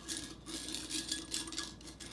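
Steel screws soaking in citric acid solution clicking and clinking against the inside of a small glass jar as they are stirred, a quick irregular run of small light ticks over a faint steady hum.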